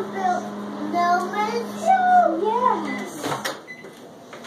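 A young child singing wordless, gliding notes over a steady low appliance hum. The hum cuts off about three seconds in, followed by a short clatter.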